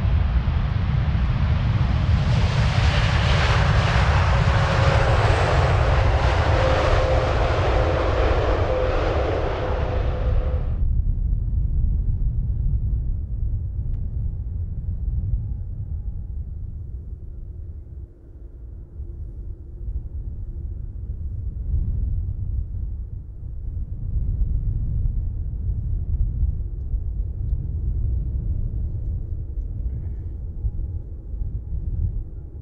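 Boeing 777-300ER's GE90 engines at take-off power on the take-off roll: a loud roar with a steady fan whine that drifts slightly lower in pitch. About eleven seconds in, the roar and whine cut off abruptly, leaving a duller low rumble of the departing jet.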